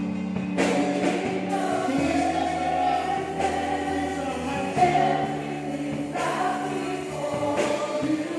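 A woman singing a gospel worship song into a microphone through the church PA, her voice in long held phrases over sustained music accompaniment.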